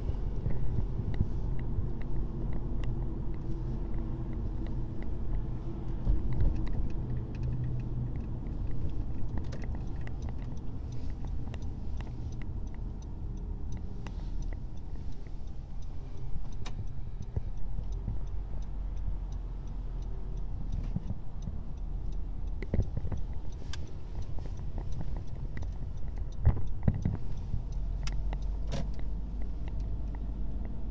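Steady low rumble of road and engine noise inside a moving Honda car's cabin as it drives along at a steady speed.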